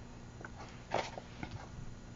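A quiet pause with a few faint, brief handling clicks from a small cardboard box being turned and passed between hands, and a soft spoken "I" about a second in.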